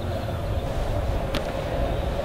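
Steady low machine drone with a faint hum, and one short click about a second and a half in.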